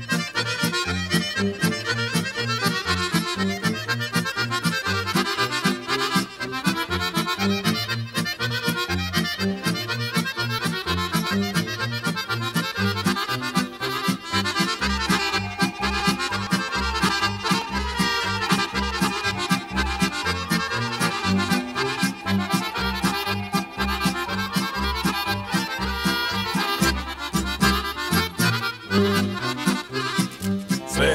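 Instrumental break of a Serbian folk kolo: an accordion plays the lead melody over a band accompaniment with a steady, even bass beat. The bass grows stronger about halfway through.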